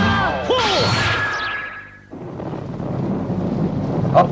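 Cartoon robot-transformation sound effects over music: a whoosh with electronic tones falling in pitch, cutting off about halfway through. A steady hiss of rain then swells in.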